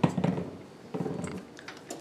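Kitchen handling sounds of a utensil working on a pan: a few soft knocks, then small sharp clicks near the end.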